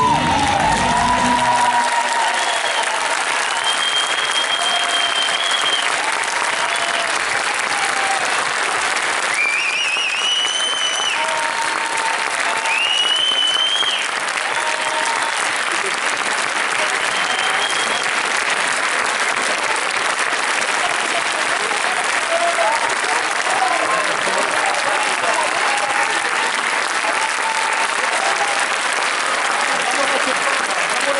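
Theatre audience applauding steadily and loudly through the curtain call, with a few long, high whistles and shouts standing out, mostly in the first half. The last of the music cuts off about a second or two in.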